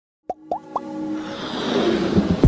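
Logo intro sting: three quick plops, each gliding up in pitch, in the first second, followed by a swelling musical build that grows louder.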